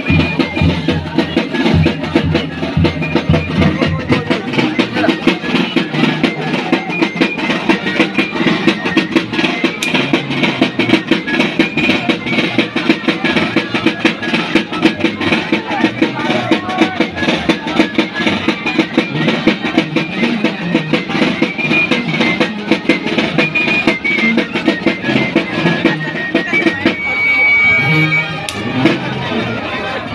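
Live band music for the torito dance, with a bass drum keeping a quick, steady beat throughout. Near the end the rhythm breaks off and a held high note sounds.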